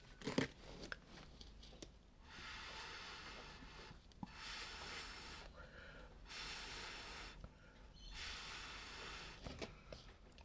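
Short blows of breath through a drinking straw onto wet acrylic pour paint, four puffs of about a second each starting about two seconds in, to hurry the thick cell activator into sinking and forming cells. A short knock comes near the start.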